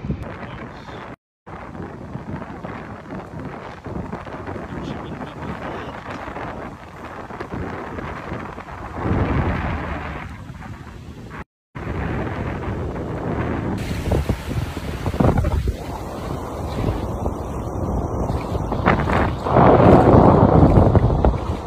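Cold wind buffeting the microphone in gusts over ocean surf on an open sandy beach. Gusts swell about nine seconds in and again near the end, and the sound drops out for a moment twice.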